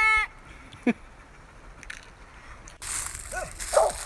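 A squirrel dog barking a few times near the end over a rustling noise, baying at a squirrel it has treed.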